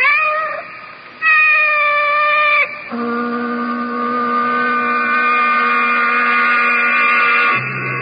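A cat meows once at the very start, then a loud held note sounds for about a second and a half, followed by sustained music chords that shift lower near the end: the act-break music cue of a radio drama.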